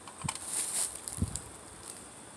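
Plastic toys rustling and knocking together as a toy police station is lifted out of a plastic milk crate, with two dull thumps, one near the start and one about a second in.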